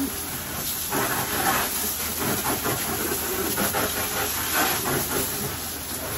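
Water spraying from a hose nozzle into metal wire pigeon cages, a steady hiss with splashing off the bars and floors. The spray gets louder about a second in.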